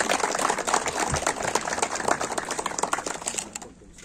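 Applause from a small group clapping by hand, a dense patter of claps that fades out near the end.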